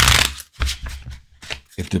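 A deck of tarot cards shuffled by hand: a short rush of sliding, riffling cards at the start, then a few light clicks and taps as the cards are handled.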